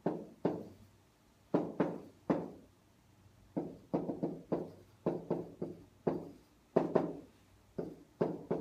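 Pen tapping and knocking on the hard surface of an interactive whiteboard while writing: about twenty short, sharp knocks in irregular clusters, each ringing briefly.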